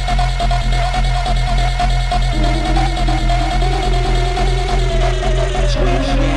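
Live electronic deep-dubstep groove played on an Elektron Digitakt sampler. A steady sub-bass and evenly ticking percussion run under a held synth tone. A lower note joins about two seconds in, and the sounds shift just before the end.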